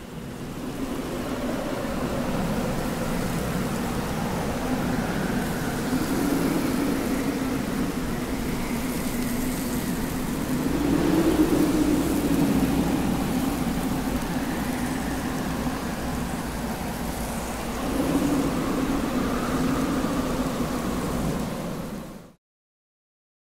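A dark, rumbling sound-design drone under the title cards. It is steady and noisy, swells twice, and cuts off suddenly at the end.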